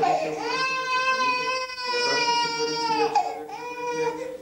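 A baby crying in long, held wails, breaking off for breath just after the start and again about three seconds in.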